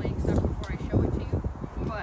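Indistinct talking, not clear enough to make out words, over a low rumble of wind on the microphone.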